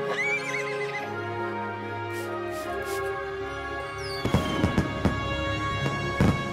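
A cartoon unicorn whinnies once, a wavering call in the first second, over background music. About four seconds in, a quick run of hoofbeats clatters in.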